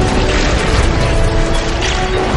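Film score music over a loud, dense wash of lightning and thunder sound effects with a heavy low rumble.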